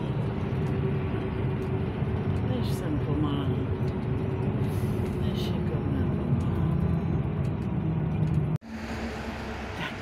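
Bus engine and road noise heard from inside the passenger cabin while driving: a steady low rumble with a constant engine hum. About eight and a half seconds in it cuts off suddenly, giving way to quieter street traffic noise.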